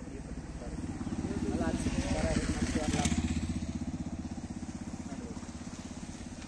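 A motor vehicle engine running close by, its low pulsing drone swelling about a second in, loudest around two to three seconds, then easing back to a steady run. Faint voices are heard under it.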